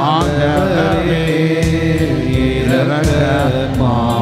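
Sung hymn with instrumental accompaniment: a voice or voices carrying a gliding melody over a steady low accompaniment, with percussion strokes keeping an even beat.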